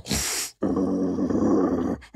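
A man imitating a snarling wolf with his voice: a short sharp hiss of breath, then a rough, throaty growl lasting over a second.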